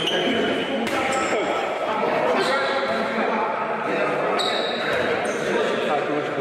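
Echoing training-hall noise: laughter and voices over repeated thuds, with a few brief high squeaks.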